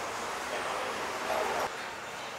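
Steady road-traffic noise, a little louder in the middle and dropping slightly near the end.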